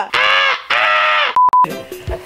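Two harsh cockatoo-style squawks in quick succession, each about half a second long, followed by a short steady beep.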